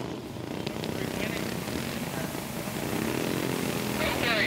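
Small single-cylinder flathead go-kart engine running steadily at low speed as the kart rolls slowly after the finish.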